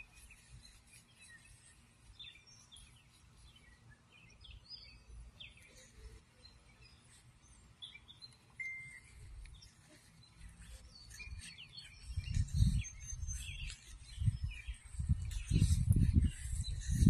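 Small birds chirping in short, scattered calls over faint outdoor background noise. In the last few seconds, loud, low, muffled rumbles on the microphone come and go.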